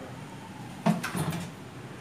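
A door being opened by its handle: a sharp clack from the latch or the door knocking about a second in, then a brief rattle as it swings open.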